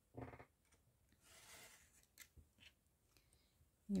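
Snap-off craft knife drawn along a steel ruler, slicing through a strip of paper on a cutting mat: a short, faint scrape about a second in, then a couple of light clicks.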